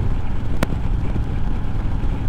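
Harley-Davidson Road King Special's V-twin engine running steadily at highway cruising speed, mixed with wind noise on the microphone. A single short click comes just after half a second in.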